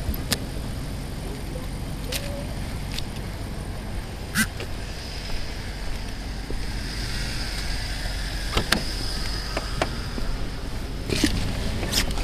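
Steady low rumble of street traffic and a car at the curb, with scattered sharp clicks and rustles of gloved hands handling a wallet, ID cards and cash on a car hood.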